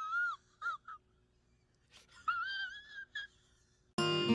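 High-pitched, wobbling crying wail used as a comic sad sound effect. One long cry breaks off just after the start and is followed by two short yelps. After a gap of about a second, another long wavering wail comes about two seconds in, with a short one after it.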